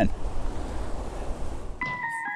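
Wind blowing across the microphone outdoors, a steady rushing noise. Near the end, sustained musical tones come in as music starts.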